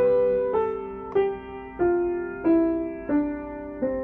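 Upright piano: a slow C major scale played downward by the right hand, one note about every two-thirds of a second, over a held left-hand C and G. It comes down to the lower C near the end.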